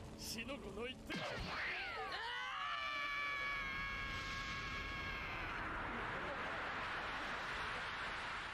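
Anime episode soundtrack playing at low volume: a shouted line of dialogue, then a long held pitched tone about two seconds in that gives way to a steady rushing noise.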